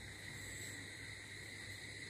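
Quiet room tone: a steady low hiss with a few faint, steady high-pitched tones, and no distinct sound event.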